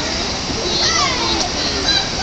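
Background chatter of several people's voices, children's among them, with no clear sound from the animals.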